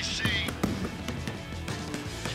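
Background music, with a few sharp thuds of a basketball bouncing on a hardwood court.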